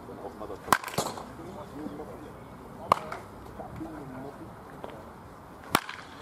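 Baseball bat striking pitched balls in batting practice: three sharp cracks, about two to three seconds apart.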